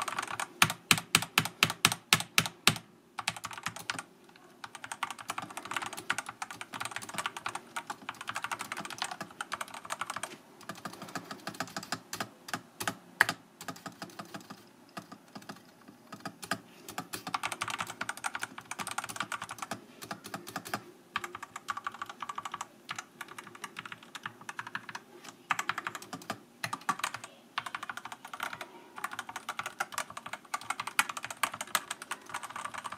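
A4Tech Bloody S87 Energy mechanical keyboard being typed on, with its silent red linear switches (BLMS Red Plus) in a silicone-damped case. A quick run of loud, evenly spaced keystrokes for about three seconds gives way to steady, continuous typing with brief pauses.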